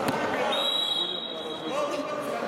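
A thud as a wrestler is brought down onto the wrestling mat right at the start, followed by voices calling out.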